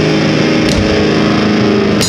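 Live heavy-metal band: heavily distorted guitars and bass holding a low, sustained chord under drums, with a cymbal crash about two-thirds of a second in.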